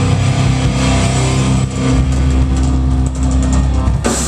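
Live heavy rock band with distorted electric guitars and bass holding a loud, sustained low chord that drones on with little drumming.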